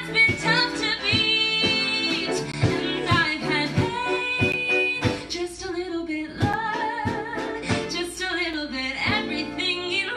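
A woman singing a musical-theatre song live with a small band of acoustic guitar, piano and drums, holding several long notes over a steady beat.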